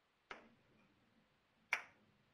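Two sharp clicks about a second and a half apart, the second louder, each dying away quickly over quiet room tone.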